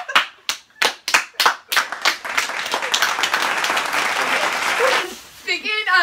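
Hand clapping: a few separate claps about three a second, then quickening into fast clapping that runs together for about three seconds and stops, with laughter near the end.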